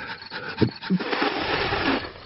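Breathy panting and puffing of a cartoon character straining to light a fire by rubbing two sticks together, with two short grunts. The puffing grows louder towards the end.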